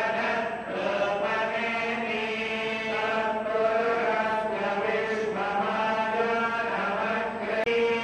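Temple priests chanting Sanskrit mantras together in a continuous, sustained chant, with a momentary break near the end.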